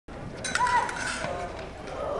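Voices in a large hall, with a short cluster of sharp clicks about half a second in.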